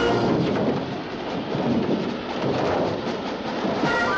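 Dense, rumbling, rushing noise of a storm buffeting a propeller plane in flight, with the engines' drone mixed in.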